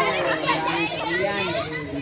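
Many girls' voices talking and calling out over one another in a lively jumble of chatter.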